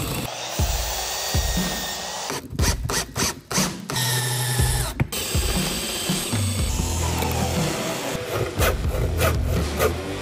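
Power drill boring into wood, the bit chewing through the timber and throwing out chips, with a quick run of sharp knocks a few seconds in.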